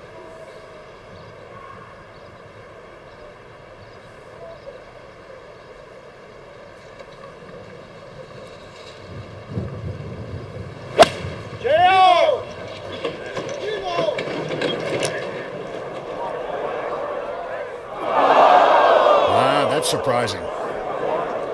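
A golf ball struck by a seven-iron off the tee: one sharp crack about eleven seconds in. A spectator shouts right after, the gallery's noise builds while the ball is in the air, and a loud crowd reaction swells near the end as the ball lands in the water.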